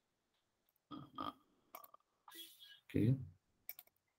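A few faint computer mouse clicks, with a quick double click near the end, among short murmured vocal sounds and a spoken "okay".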